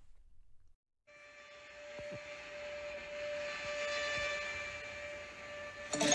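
A steady hiss with a humming tone fades up after a brief cut to silence about a second in, then holds at a moderate level.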